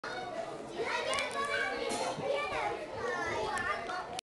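Many children's voices overlapping: shouts, calls and chatter of children playing, with no single voice standing out.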